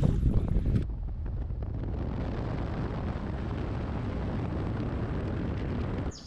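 Gusty wind on the microphone for about the first second, then steady road and wind noise from a car driving along a highway.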